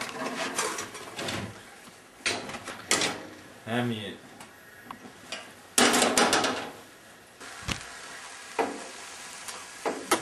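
Handling clatter: a utensil knocking and scraping in a glass bowl, with scattered sharp knocks and a louder noisy clatter about six seconds in. A person hums "mmm" about four seconds in.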